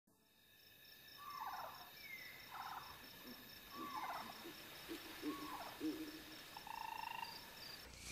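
Faint night-time nature ambience from a cartoon soundtrack: a steady high insect chirping, pulsing about four times a second, with a series of short animal calls that fall in pitch, about one every second or so.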